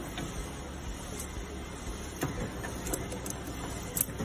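15 kVA portable resistance seam welder at work: its copper wheel electrode rolled along a stainless steel strip while the welding transformer hums steadily under pulsed weld current, with a few sharp clicks.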